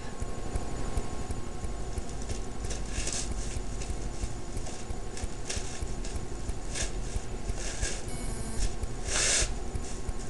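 Hands handling a synthetic wig and its clip-on ponytails: scattered rustles and light knocks, the longest a little after nine seconds, over a steady low hum.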